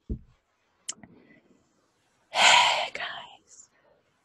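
A woman whispering under her breath, with a short low murmur at the start and a loud breathy whisper a little past halfway through.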